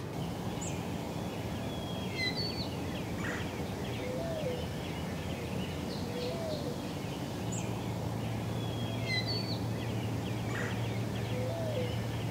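Wild birds singing outdoors in early spring. A songbird sings the same high, warbled phrase twice, about six seconds apart, and a few short, low, hooked calls come in between. Underneath runs a steady low rumble of background noise.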